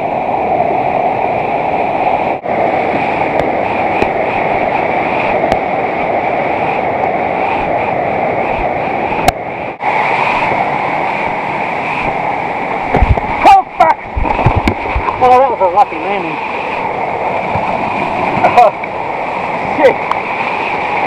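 Loud, steady rush of a steep mountain creek cascading over rocks in a small waterfall. Around two-thirds of the way through, a few sharp thumps break in close by.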